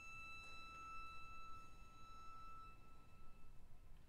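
A string ensemble's last high note, held and fading away over about three and a half seconds, leaving faint room tone.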